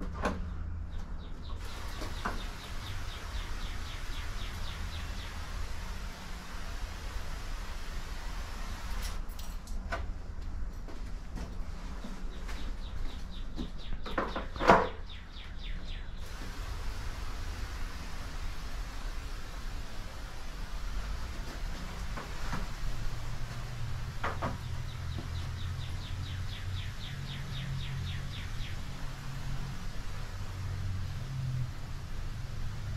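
Paver sealer being sprayed from a sprayer wand, a steady hiss with a low hum beneath it and runs of fast faint ticking at times. A single sharp knock about halfway through.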